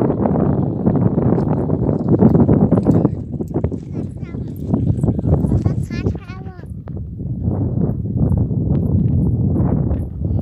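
Voices calling out in the field over a steady rumbling noise, with a quick run of short, bending calls near the middle.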